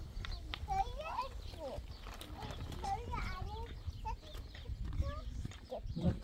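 Farm animals calling in many short, wavering calls, mixed with people's voices.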